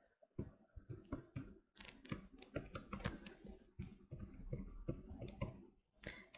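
Computer keyboard being typed on: a faint, irregular run of quick key clicks.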